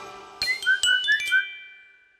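A short chiming musical sting for an end logo: about six quick, bright bell-like notes, some sliding slightly upward in pitch, whose last notes ring on and fade away.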